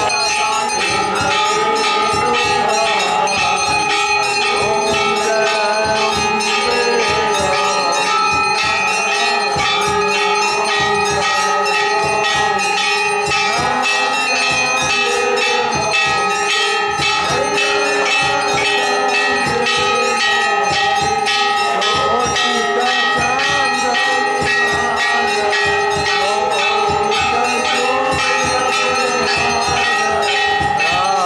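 Temple bells rung rapidly and without pause, their ringing tones overlapping steadily, with crowd voices underneath. This is the continuous bell ringing that accompanies a Hindu aarti.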